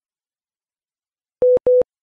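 Dead silence, then two short identical electronic beeps in quick succession about a second and a half in. This is a broadcast cue tone marking a segment break for stations relaying the program.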